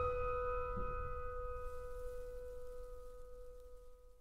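A piano chord ringing out and slowly dying away, the final chord of a slow ballad.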